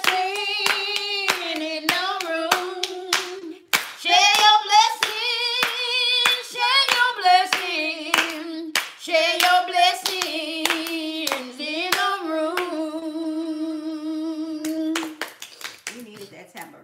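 A woman singing a wavering melody with vibrato over steady hand claps, about three claps a second. The clapping thins out near the end while she holds one long note, then both stop just before the end.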